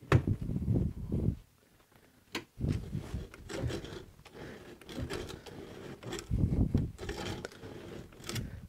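1890 Millers Falls hand-cranked breast drill turning, its gears clicking and the bit grinding into a block of wood in uneven spurts. There is a pause of about a second after the first stretch. The hole is nearly bored through.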